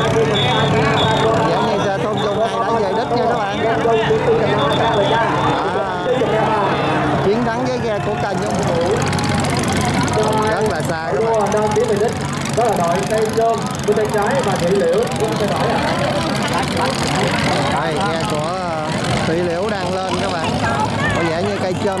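Crowd of spectators shouting and cheering over a steady low drone of boat engines. A high whistle sounds in short repeated blasts for the first couple of seconds.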